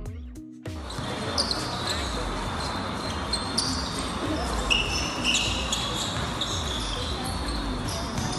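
Background music stops under a second in and gives way to the live sound of a basketball game: a ball bouncing on the court, short high squeaks of sneakers, and players and spectators calling out over a steady crowd murmur.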